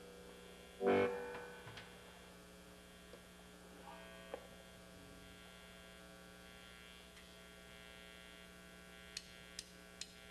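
Steady electrical hum from stage amplifiers between songs, broken by one loud ringing hit about a second in, a few faint notes, and small clicks near the end.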